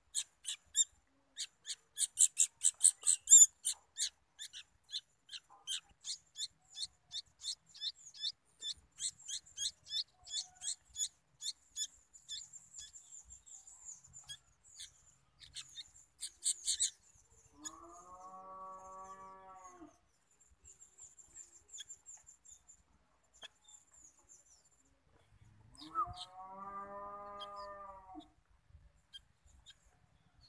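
Sooty-headed bulbul fledglings giving rapid, high begging chirps, several a second, thinning out after about twelve seconds, with a louder burst just past the middle. Twice, just past halfway and near the end, a deeper, drawn-out wavering call of about two seconds sounds.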